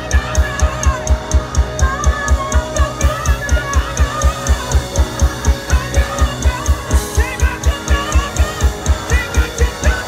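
Live band playing loud music: electric guitar over a drum kit with a fast, even kick-drum beat of about four beats a second and steady cymbal ticks.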